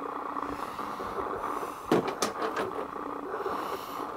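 A steady room hum with faint even tones, interrupted about two seconds in by a few light knocks, typical of an object being handled.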